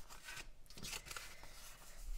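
Faint rustling of glossy paper sticker sheets being handled and shuffled by hand.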